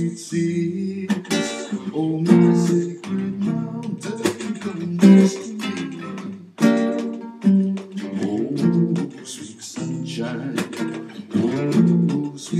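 Nylon-string classical guitar played solo in a blues style: strummed chords in a steady rhythm.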